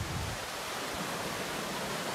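Steady wash of small ocean waves breaking on a sandy beach.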